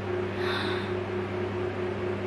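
Electric fan running steadily: a low hum with a few constant tones under an even hiss of moving air.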